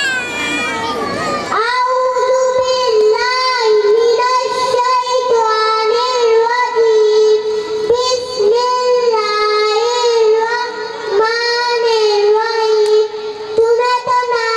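A young boy singing into a microphone over a PA system, a high child's voice holding long drawn-out notes with small turns in pitch.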